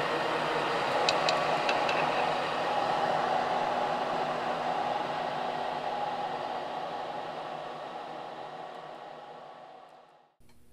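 Small drum coffee roaster's cooling fan blowing steadily through the cooling tray of freshly dropped beans, with a few sharp snaps about a second in from beans still cracking. The sound fades away toward the end.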